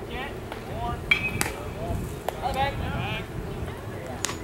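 Scattered voices and calls from players and spectators at a baseball field, with two sharp knocks, one about a third of the way in and another just past halfway.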